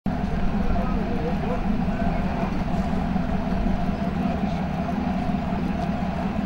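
Boat engine running steadily, heard from on board as an even low drone.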